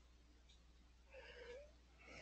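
Near silence over a steady low hum, broken a little past a second in by one faint short cry that dips and then rises in pitch.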